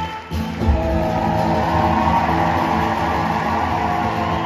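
Two acoustic guitars strummed together in a live concert: after a brief drop, a hard accented strum just under a second in, then steady playing.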